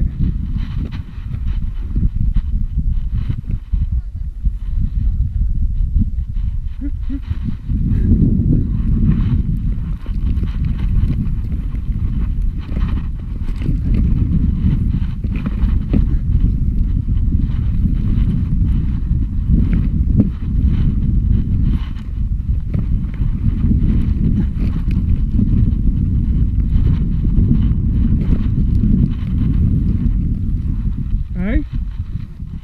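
Wind buffeting a GoPro Hero 4's microphone: a loud, steady low rumble with faint clicks and knocks scattered through it.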